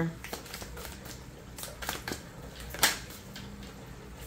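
Tarot cards being handled by hand on a tabletop as a card is drawn from the deck: a scattering of light clicks and taps, the sharpest one a little before the end.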